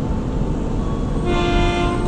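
Electric commuter train horn sounding one steady note for under a second near the end, as the train is cleared to depart, over a low steady rumble.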